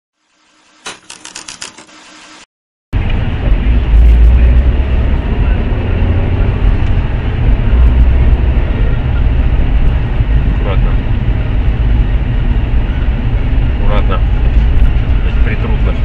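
A brief pulsing intro sound, then, about three seconds in, a loud steady low rumble of a car driving, picked up by a dashcam inside the car: engine and tyre noise.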